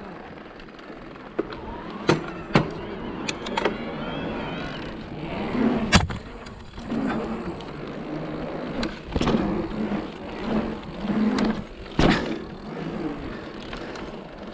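Electric mountain bike rolling around an asphalt pump track: the tyres hum on the tarmac, swelling and easing with each roller, with several sharp knocks and clatters from the bike along the way.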